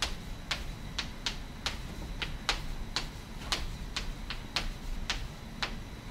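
Chalk clicking and tapping on a blackboard as an equation is written: sharp, irregular taps, about two to three a second.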